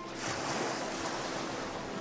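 Ocean surf: a rush of waves that swells up right at the start and slowly fades.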